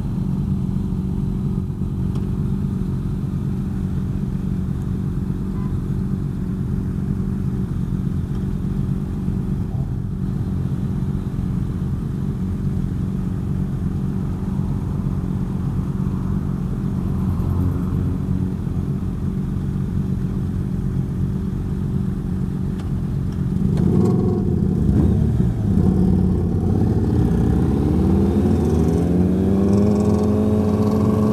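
Kawasaki ZRX1100's inline-four motorcycle engine idling steadily at a stop, along with the other motorcycles around it. About 24 s in the engines get louder as the bikes pull away, and near the end the engine rises steadily in pitch as it accelerates.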